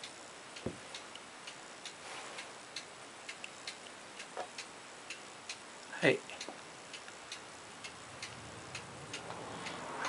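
Faint, irregular light ticking, about two ticks a second, from the small mechanism turning a paper figure-skater cutout on a wire.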